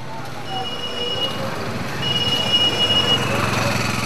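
Busy street traffic of cycle rickshaws, bicycles and auto-rickshaws: a steady mix of engines, wheels and distant voices. A high, steady tone sounds twice, about half a second in and again about two seconds in.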